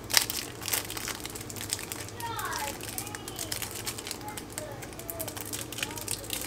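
A thin clear plastic sleeve crinkling in the hands around a packaged lash box, in short, irregular rustles.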